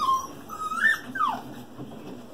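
Australian Shepherd puppy whining: a brief high whine at the start, then a longer whine that climbs in pitch and a second that slides down, just before and after a second in.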